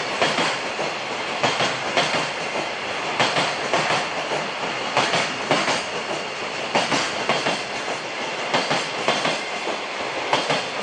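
Mostly empty container flat wagons of a freight train rolling past at low speed over a steady rolling rumble. The wheels click over the rail joints in close pairs, about one pair every second and a half.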